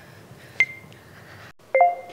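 Two short electronic countdown beeps: a single high beep about half a second in, and a second, fuller beep with several pitches near the end.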